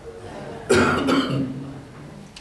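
A man clearing his throat: two rough, coughing bursts close together about two-thirds of a second in, then fading.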